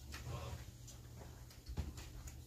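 Quiet classroom room tone: a steady low hum with a few soft knocks and small movement sounds, the sharpest knock near the end.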